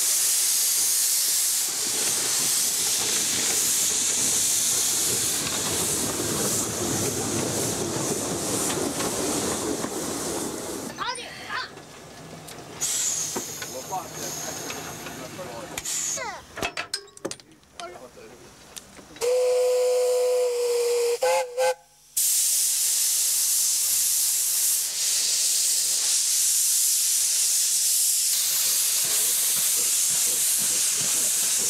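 15-inch-gauge steam locomotive, a half-scale replica of an Indian ZB class engine, hissing steam. About two-thirds of the way through, its whistle gives one steady blast of about two seconds and then a brief second toot. After that the loud hiss of steam from the open cylinder drain cocks resumes as it moves off.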